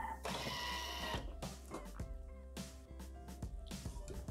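Soft background music. Under it are light clicks and a short rushing noise about a second long near the start, as the Thermomix TM6's lid is unlocked and lifted off its mixing bowl.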